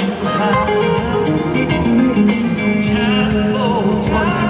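Live soft-rock band playing, with guitar prominent and a lead vocal into the microphone.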